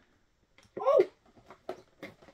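A short strained vocal sound that rises and falls in pitch, about a second in, then a few light clicks of hard plastic being pried at as a Funko Soda 3-liter plastic bottle is forced open.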